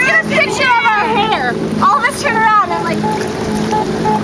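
High-pitched voices making wordless sliding cries and laughter in two bursts, over a steady low hum and a faint repeating beep-like tone.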